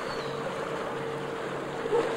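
Passenger ferry Oldenburg's engine running steadily as she passes close by, a steady hum over the rush of water along her hull and wind on the microphone. A short louder sound comes just before the end.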